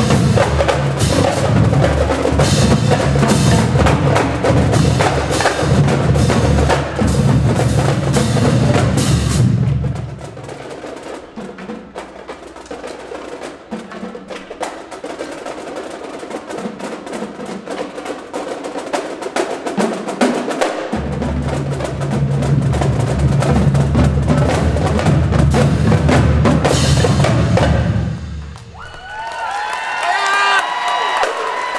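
A marching drumline of snare drums, tenor drums, bass drums and cymbals plays a loud full-line passage. About ten seconds in, the bass drums drop out for a quieter stretch of lighter playing. The full line comes back in about twenty-one seconds in, then stops shortly before the end, and crowd shouts and cheering break in.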